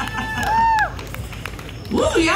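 A short gap in the live band's music, filled by voices calling out: a couple of rising-and-falling whoops in the first second, with no words.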